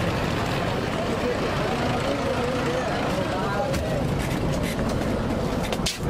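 Bus engine running with a steady low rumble, under people's voices, with a few sharp clicks and knocks near the end.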